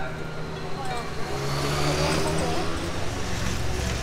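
Street traffic: a motor vehicle's engine running close by, its noise swelling about two seconds in as it passes, with people talking in the background.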